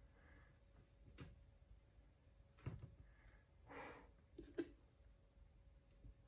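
Near silence, with a few faint taps and rustles of hands turning the painted round on a cake spinner.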